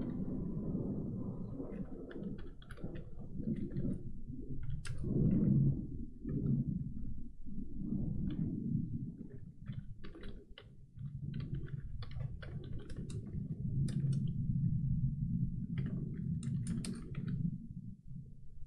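Computer keyboard typing in irregular runs of keystrokes, over a steady low hum.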